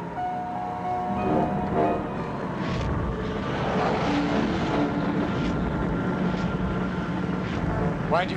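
Steady low rumble of the burning bush's flames, under a few long held notes of the film score.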